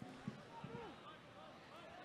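Faint pitch-side ambience with distant voices of players calling out.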